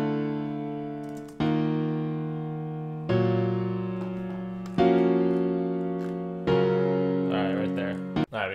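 FL Studio's FL Keys piano plugin playing back a slow progression of five sustained chords, a new chord struck about every second and a half, each fading as it rings.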